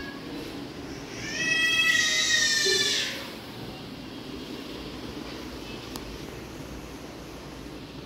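A single high-pitched, drawn-out cry starting about a second in, lasting about two seconds and falling slightly in pitch.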